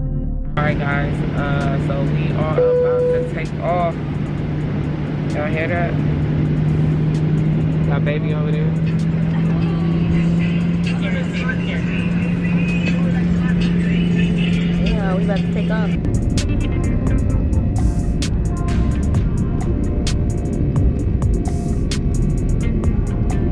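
Airliner cabin noise with a steady low hum and voices, mixed with background music. About sixteen seconds in the sound changes abruptly to a harsher, noisier texture with many sharp ticks.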